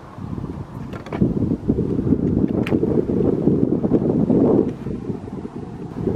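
Wind buffeting the microphone: a rough, low rumble that swells about a second in and eases off near the end.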